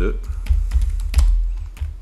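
Computer keyboard being typed on: a quick run of separate keystroke clicks as a short phrase is entered.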